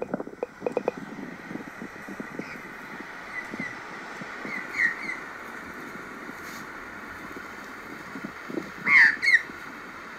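Australian magpies squawking over a steady outdoor hiss, heard as footage played back through a tablet's speaker. There are a few short calls in the middle, and the loudest pair of calls comes near the end.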